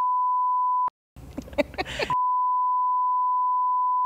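A steady, single-pitched censor bleep tone masking speech. It cuts out just before a second in for about a second of voices and laughter, then the same bleep resumes and holds until near the end.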